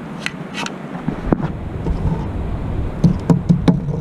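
Handling noise from a metal sand scoop and a pair of bent wire-framed glasses being lifted out of it: a few sharp clicks, then four louder clicks in quick succession about three seconds in, over a steady low rumble.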